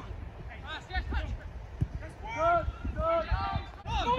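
Players calling out to each other across a football pitch: distant raised voices, two or three shouts, over a low steady rumble.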